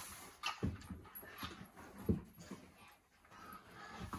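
A few faint, short thumps and rustles from a child moving on a hard floor as he kicks a cowboy hat up onto his head.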